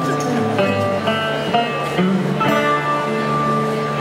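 Live band playing a song's instrumental intro, with plucked guitar notes over sustained pitched tones.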